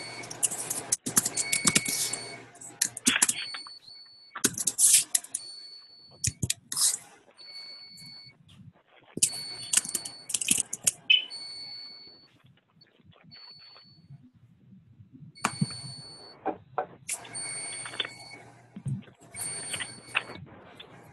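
Background noise picked up by a participant's open microphone on an online call: irregular bursts of clattering and rustling noise, with a high-pitched tone that comes and goes, and some quieter stretches between.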